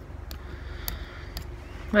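Small scissors snipping through felted wool, three faint snips about half a second apart over a low steady rumble.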